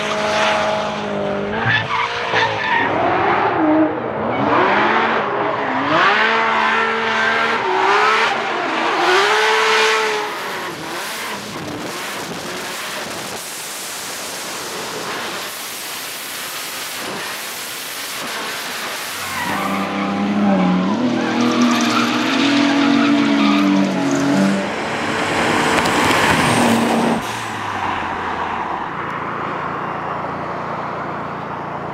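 Drift car engines revving hard, pitch swinging up and down, with tyre squeal and skidding. A noisier, steadier stretch of tyre and engine sound comes in the middle, then another engine revs up and down before easing off near the end.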